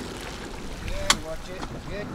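Small motorboat holding against an iceberg: steady motor and water noise with wind on the microphone, and one sharp knock about a second in.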